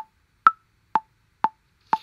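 BandLab's metronome clicking on each beat at 123 bpm, about two clicks a second. A higher-pitched accented click about half a second in marks the first beat of the bar.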